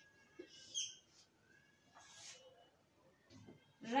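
Marker pen on a whiteboard: a few faint, brief high squeaks as letters are written, then a short scratchy stroke about two seconds in.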